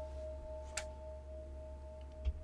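A single sustained note held in a TV drama's background music: a quiet, steady ringing tone, with a faint click a little under a second in.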